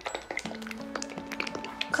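Quiet background music with held notes, starting about half a second in, over a few light taps and clicks from a small cosmetic bottle being handled as liquid foundation is dispensed.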